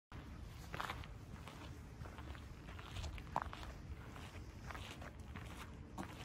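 Faint, irregular footsteps of someone walking outdoors over a steady low background noise, with one sharper step or knock about three and a half seconds in.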